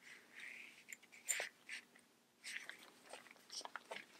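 Faint rustles and a few light clicks of a fabric bag strap with metal clasps being handled.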